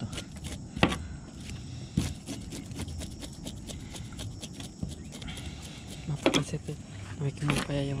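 A knife scraping the scales off a small fish, heard as a run of short, sharp scrapes at an uneven pace.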